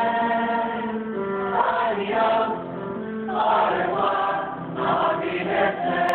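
A choir of mixed voices singing held chords, the sound swelling and easing phrase by phrase.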